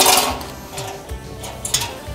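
A sharp metallic clack, then lighter rattling and ticking of wire hooks on a steel pegboard display rack as items are handled and hung, over background music.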